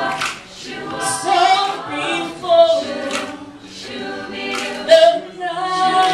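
A mixed male and female a cappella group singing a slow doo-wop ballad in close harmony, with held lead notes over backing voices repeating "shua" syllables.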